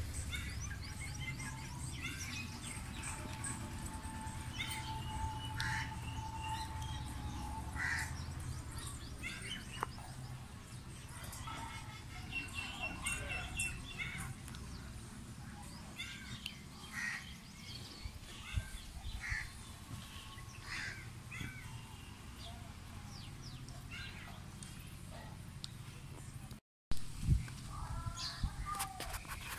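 Crows cawing and small birds chirping in short scattered calls throughout. A steady tone is held for the first several seconds over a low rumble.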